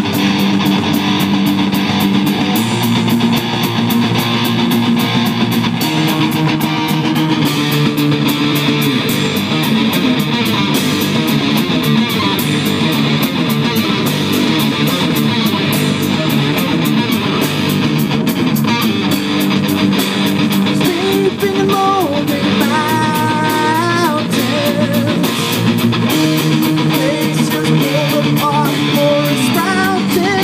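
Live amplified rock band playing a progressive rock song: distorted electric guitars, bass guitar and a drum kit, loud and steady throughout.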